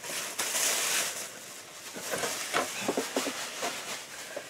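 Packaging being handled: a short burst of crinkling rustle near the start, then quieter rustles and light taps.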